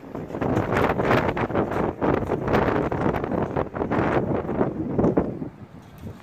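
Wind buffeting the phone's microphone in loud, uneven gusts, easing near the end.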